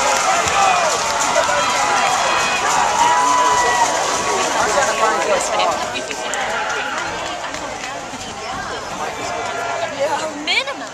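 Football crowd in the stands, many voices talking and shouting over one another while a play runs, easing off a little in the second half.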